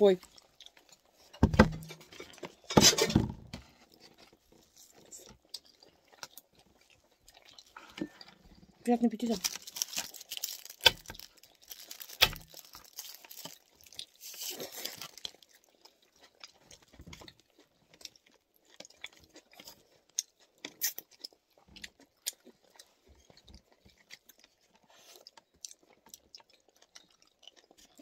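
Close-up eating sounds: chewing and crunching of food, with small clicks of chopsticks and plastic food containers. Two loud knocks in the first few seconds.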